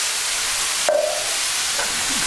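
Pork, vegetables and whole canned tomatoes sizzling steadily in a thin wok over a gas flame at above-medium heat. The thin wok makes the frying lively.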